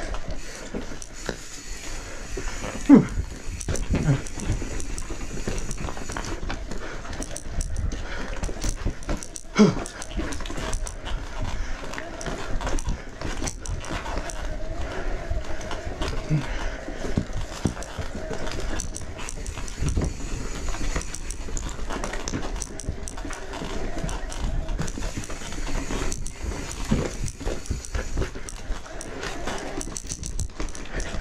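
Electric mountain bike rattling and knocking over rocky singletrack, with tyre and drivetrain noise and, at times, a faint steady whine from the pedal-assist motor. A few short sounds fall in pitch, the loudest about three seconds and ten seconds in.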